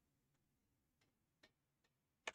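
Near silence, with a few faint computer keyboard key taps about a second in and near the end.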